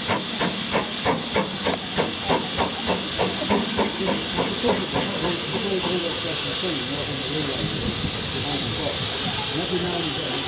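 Steam hissing steadily from a standing GWR Hall-class 4-6-0 steam locomotive. Over it there is a rhythmic pulsing, about three beats a second, that fades out about halfway through.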